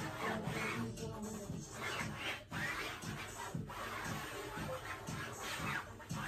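A jumbo black pencil scratching and rubbing across a stretched canvas in repeated sweeping strokes as curved lines are sketched, over background music.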